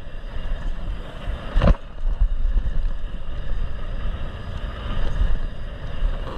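Mountain bike rolling fast down a dirt trail: steady wind rumble on the bike-mounted camera's microphone with tyre noise, and one sharp knock from a bump just under two seconds in.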